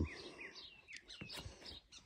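Small birds chirping faintly: a run of short, falling chirps, about three or four a second, with a couple of faint clicks a little past the middle.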